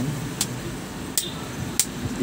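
Three sharp clicks from the small front-panel toggle switches of an old SMG Electronics amplifier being flipped.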